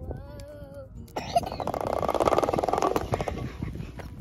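Roller slide clattering as two children ride down it: the rollers make a fast, even rattle for about two seconds, then stop. A child's voice is heard briefly just before.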